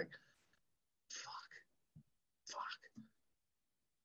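Near silence, broken by two short, faint whispered sounds from a person: one about a second in and one a little past halfway.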